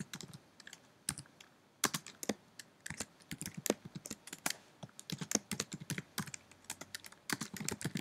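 Computer keyboard typing: irregular keystroke clicks in quick runs, with a short pause a little after a second in.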